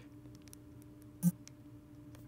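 Low steady hum with a few faint ticks and one short, sharp knock about a second in: handling of a smartphone while its volume buttons are pressed.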